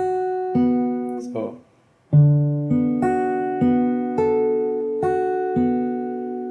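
Acoustic guitar fingerpicked one string at a time on a D6 chord, each note left ringing. The notes stop briefly a little under two seconds in, then the picking pattern starts again with a low bass note and continues at about one note every half second.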